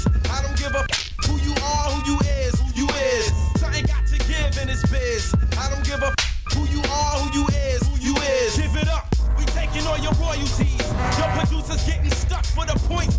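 Hip hop music: a heavy, steady bass beat with a voice rapping over it.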